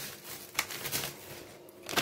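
Crinkling and rustling of seasoning sachets and plastic-wrapped groceries being handled, with a few small sharp ticks.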